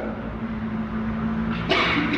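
A low, steady rumble with a faint steady hum; the hum stops shortly before the end.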